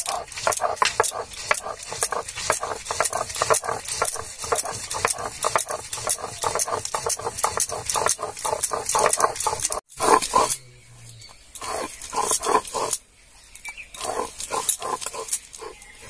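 Stone hand-grinder (shil-nora) scraping and crunching over soaked split lentils and green chillies on a grinding slab, in quick back-and-forth strokes several times a second. After about ten seconds the strokes become sparser, with short pauses.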